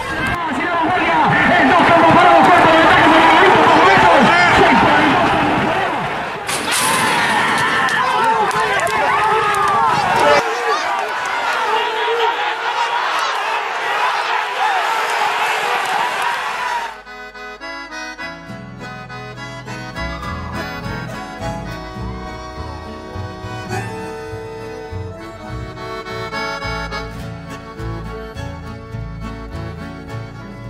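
A crowd of spectators shouting and cheering at a horse race, many voices at once, for roughly the first half. It cuts off abruptly and gives way to accordion music with a steady beat.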